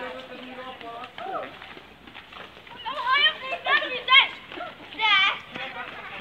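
Children and teenagers shouting and shrieking at play, with several loud high-pitched cries in the second half.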